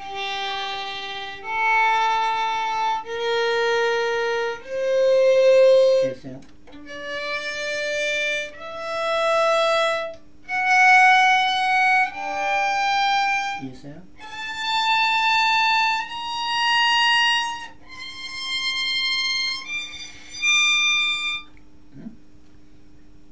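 Violin playing a slow ascending G melodic minor scale in third position, starting on G on the D string, one sustained bowed note about every second and a half. The notes climb step by step through the raised E and F sharp and on past the octave, with brief breaks between groups of notes.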